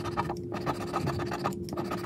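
A pink plastic scraper scratching the latex coating off a lottery scratch-off ticket in quick, short strokes, pausing briefly twice.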